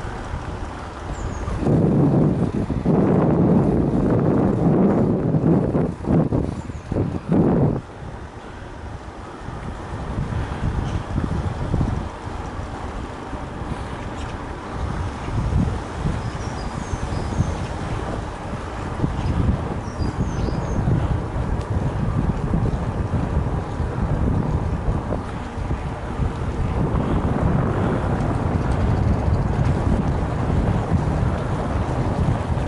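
Wind buffeting the microphone of a bike-mounted camera while the mountain bike rolls along paved road, with a steady low rumble of tyre and road noise. The buffeting is heaviest for the first several seconds, then settles to a steadier rumble.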